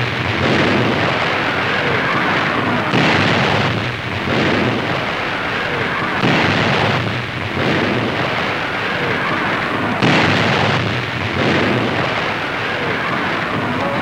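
A battleship's 16-inch guns firing: three heavy booms about three to four seconds apart, each dying away in a long rumble, with the tail of an earlier boom at the start.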